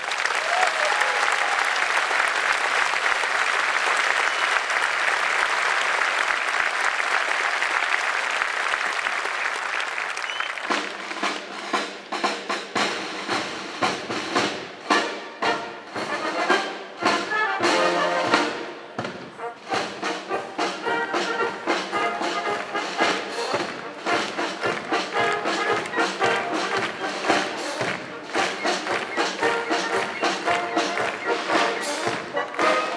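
Audience applause that fades out over about ten seconds. Then a wind band starts playing a march: brass and woodwinds over a steady drum beat.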